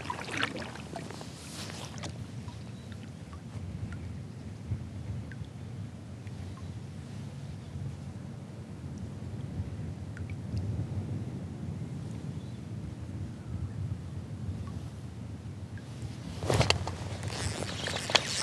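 Steady low wind rumble on the microphone and small waves lapping around a plastic kayak, with a few faint clicks. A loud sharp knock comes near the end.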